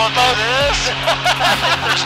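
Excited laughing and whooping voices over the steady drone of an Edge aerobatic plane's piston engine and propeller, heard from inside the cockpit.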